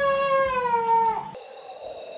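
A toddler's long, drawn-out whine or cry, one held note that dips in pitch and stops about a second and a half in.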